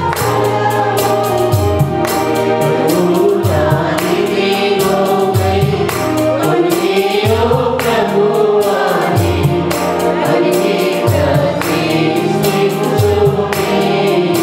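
Mixed choir of women and men singing a Telugu Christian worship song in unison over electronic keyboard accompaniment with a bass line and a steady beat.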